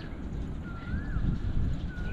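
A bird whistling a short note that rises and then falls, twice, over a steady low rumble.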